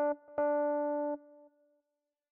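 A single Lounge Lizard EP-4 electric piano note sounded twice at the same pitch as the note is clicked and stretched in the piano roll: a short blip, then from about half a second in a held note that stops after under a second and fades out.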